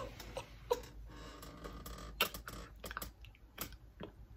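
Faint, scattered clicks and taps, with a couple of short breathy laugh sounds near the start.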